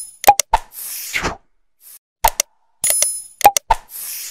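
Animated like-and-subscribe sound effects: sharp pops and mouse-click sounds in pairs, a whoosh about a second in, and a short bright ding near the end, in a looping pattern.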